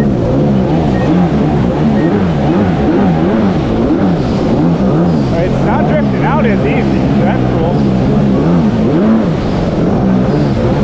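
Two-stroke twin engine of a 1998 Kawasaki 750 SXI Pro stand-up jet ski running under way, its revs rising and falling about once a second as the throttle is worked, with water rushing under the hull. The rider is working the throttle to try to make the engine bog, troubleshooting a bogging fault.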